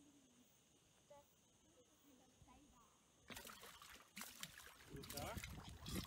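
Water splashing and sloshing around a crocodile feeding on a shark in its jaws. It is faint at first, then starts suddenly and loudly about three seconds in, with people's voices joining near the end.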